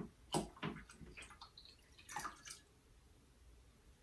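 Water poured from a glass beaker into a glass beaker of liquid: a few faint splashes and trickles in the first couple of seconds, then it stops.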